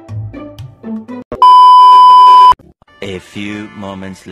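An electronic beep, a steady 1 kHz tone about a second long, starts about a second and a half in, very loud and cutting off abruptly. Background music plays before it, and a voice follows near the end.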